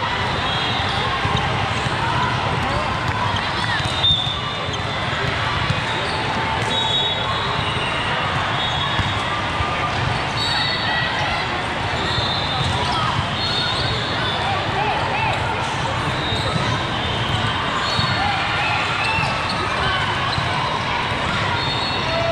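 Busy, echoing hall during an indoor volleyball tournament: many voices of players and spectators mixed with volleyballs being hit and bouncing, and a sharp ball strike about four seconds in. Short high-pitched squeaks come and go through it.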